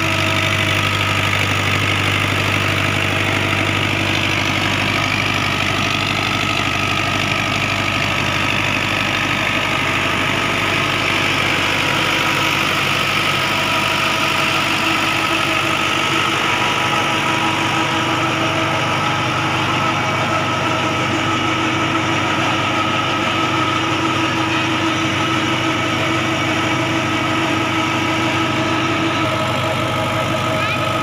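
Diesel engine of a 640 farm tractor idling steadily at close range, its even hum unchanged throughout.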